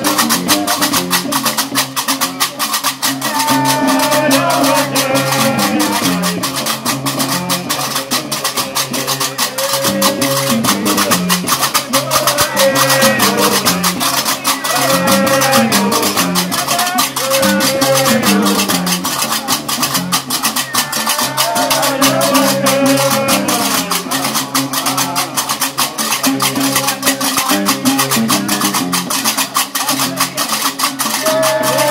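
Algerian diwane (Gnawa) music: a guembri bass lute plucks a repeating low riff under the steady, fast metallic clatter of several pairs of qraqeb iron castanets. Men's voices join in singing a few seconds in.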